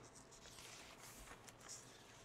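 Near silence: faint room tone with a little soft rustling.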